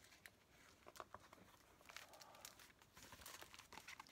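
Faint rustling and crinkling of a picture book's large paper fold-out page being handled and opened out, with scattered light clicks.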